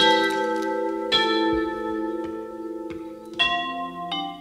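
Tuned mallet percussion struck in ringing chords, each left to sustain and slowly fade; fresh chords come about a second in and again near the end.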